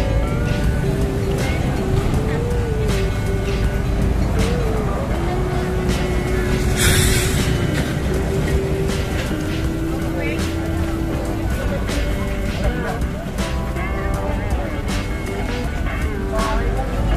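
Background music over busy street ambience: a steady traffic rumble and people's voices. There is a short, loud hiss about seven seconds in.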